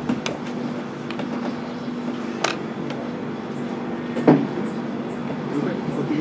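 Open-air ambience with faint voices and a steady low hum, broken by a few sharp knocks; the loudest knock comes about four seconds in.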